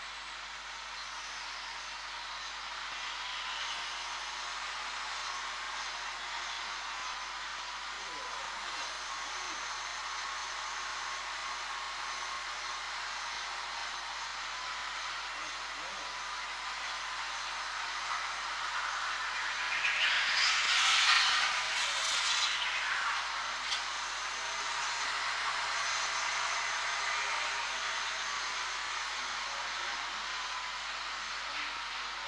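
Track sound of a greyhound race in progress: a steady rushing noise that swells louder for a few seconds about two-thirds of the way through.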